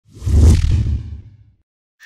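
An intro sound effect: a single whoosh with a deep low boom that swells in quickly and fades away within about a second and a half.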